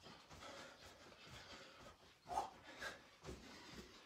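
Faint, heavy breathing of a man in the middle of a fast cardio exercise, with two louder breaths a little past halfway, and soft footfalls of sock-clad feet on a rug.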